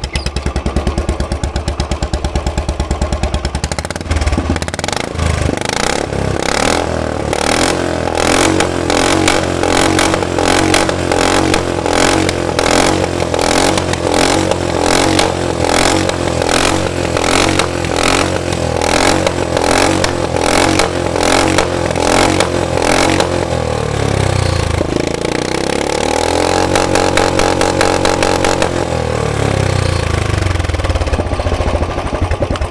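Royal Enfield Bullet 350 ES single-cylinder engine running through a short open exhaust pipe instead of the stock silencer, really loud. It idles, then is revved repeatedly by the throttle, held at a higher rev near the end and let fall back.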